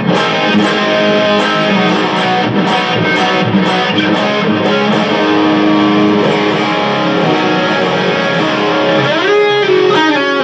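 LTD electric guitar being test-played after a setup, picked notes and chords ringing out. There are quick picking attacks in the first few seconds and a rising slide near the end.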